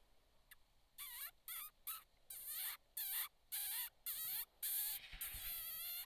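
A predator call giving a quick series of short, high, wavering squeals like a distressed rodent, about nine in a row starting a second in, to lure a coyote closer. A brief low thump sounds near the end.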